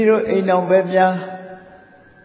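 A man's voice reciting in a chant, held on level pitches with few breaks, which fades out in the second half.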